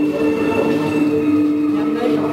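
A loud, steady droning hum of several held tones that does not change.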